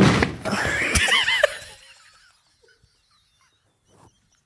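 People laughing hard, with a sharp knock at the start and another about a second in. The laughter dies away to near silence about two seconds in.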